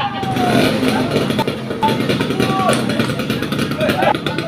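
A steady low engine rumble with people's voices over it.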